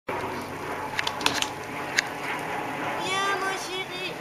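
Oscillating lawn sprinkler spraying water with a steady hiss, with a few sharp clicks in the first half. Near the end a high voice cries out in one drawn-out, wavering call.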